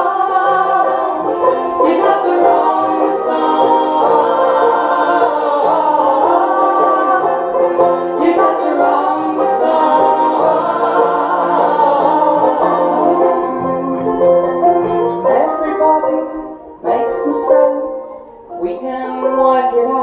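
Live acoustic folk music: female voices singing together in harmony over strummed banjo, mandolin and acoustic guitar. The music thins and drops in level about three-quarters of the way through, with short breaks near the end.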